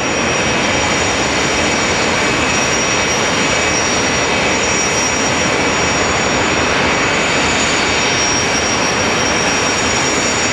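Jet dragsters' turbine engines running at the starting line before launch: a loud, steady rush with a high, unwavering whine over it.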